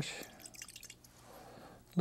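Faint wet squishing of a liner brush being loaded with paint on an artist's palette.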